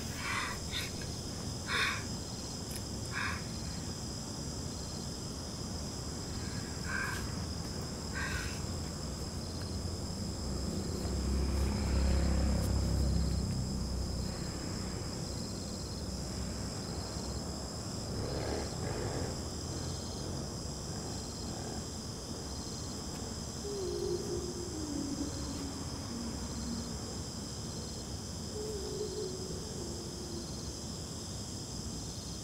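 Crickets and other night insects chirring steadily, with a fainter chirp pulsing about once a second. A low rumble swells and fades around the middle.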